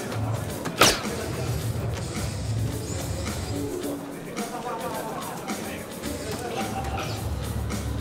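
Background music and murmur of a crowd in a large hall. About a second in there is one sharp, loud clack, typical of a soft-tip dart striking an electronic dartboard.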